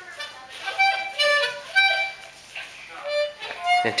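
A small harmonica blown by a toddler in several short, uneven puffs of reedy chords, with a pause in the middle before two more short blows near the end.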